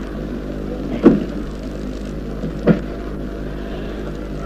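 A steady low hum runs throughout, with two short voice sounds about a second in and again near three seconds.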